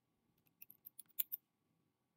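Computer keyboard typing: a quick, faint run of about eight keystrokes lasting about a second, starting about half a second in.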